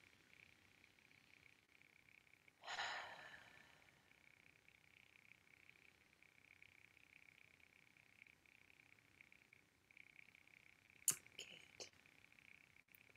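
Near silence, with a faint steady high-pitched chirring underneath. A person's breath is heard once, about three seconds in, and a few small clicks come near the end.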